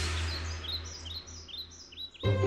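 Birdsong: a series of short, high chirps, over a fading rush of noise.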